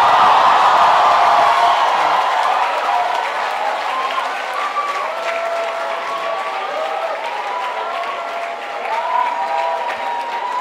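Audience applauding and cheering, with scattered voices calling out over the clapping. It is loudest in the first couple of seconds, then gradually dies down.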